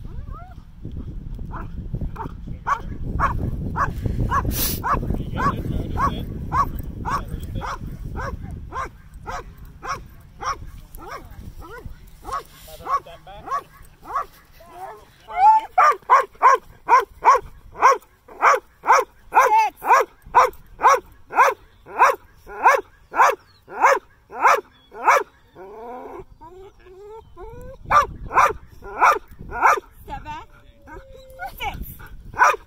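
A Dutch Shepherd barking over and over at a steady pace, about two barks a second. The barks grow louder about halfway through, pause briefly, then start again near the end.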